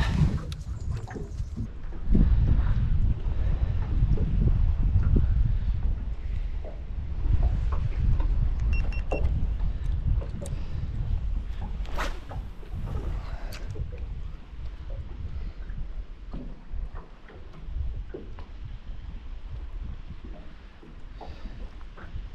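Wind buffeting the microphone in a low, uneven rumble, over lake water lapping at the aluminium boat. A couple of sharp clicks come about twelve and thirteen and a half seconds in.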